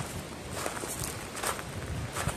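Footsteps crunching on a gravel path, about two steps a second.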